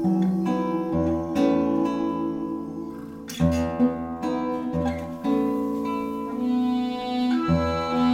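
Instrumental passage of a Swedish ballad: nylon-string classical guitar plucked over accordion holding sustained chords with a bass note on each beat.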